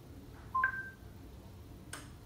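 Smart-home voice assistant's electronic acknowledgment tone: a short two-note beep, rising from a lower to a higher pitch, right after a spoken command to switch on a scene. It signals that the command has been heard.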